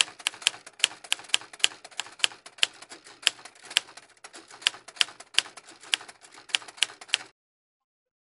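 Rapid, irregular clicking of a computer mouse as tiles are picked up and dropped on screen, several sharp clicks a second, stopping about a second before the end.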